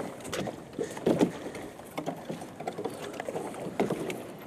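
Scattered knocks, clunks and scrapes of a small jon boat's hull as a person climbs in and shifts his weight aboard, with a few short low thuds.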